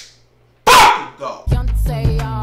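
A man's single short, loud shout, then music with deep bass and a beat starts about a second and a half in.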